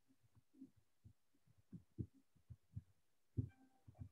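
Faint, irregular low thumps and bumps, a dozen or so, with the loudest near the end: handling noise from someone moving about and handling things close to the microphone.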